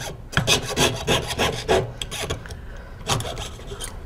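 Jeweler's saw cutting through thin copper sheet, the fine blade rasping in quick, even up-and-down strokes, about five a second. The strokes thin out about halfway through and stop after a last few near the end.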